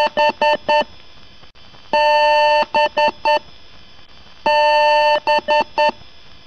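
Computer BIOS POST beep code on the PC speaker: one long beep followed by three short beeps, repeating about every two and a half seconds. Each beep is a steady tone sounding two pitches at once.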